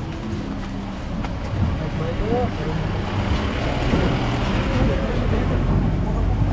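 A low, steady rumble like a motor or traffic, with faint distant voices a couple of times.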